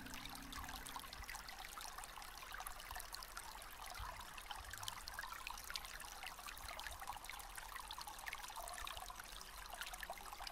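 Faint trickling stream water, a steady wash with many small splashes. The last notes of the music fade out in the first second.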